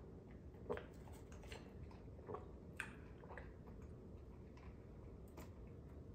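Near-quiet room tone with a few faint, scattered clicks and ticks, the loudest a little under a second in.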